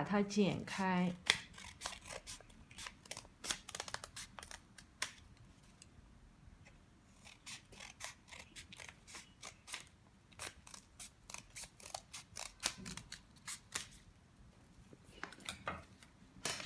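Scissors snipping through a folded sheet of paper: a rapid series of short, sharp cuts in two runs, with a pause of about two seconds between them.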